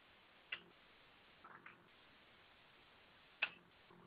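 Near silence broken by a few faint, short clicks: one about half a second in, a couple of softer ones around a second and a half, and a sharper one about three and a half seconds in.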